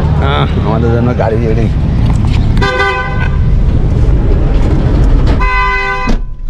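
A vehicle horn tooting twice, each toot under a second long and about three seconds apart, over a steady low rumble of street traffic.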